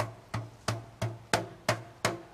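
Evenly spaced percussive beats, about three a second, each a sharp knock with a short low thud beneath, like a drum beat.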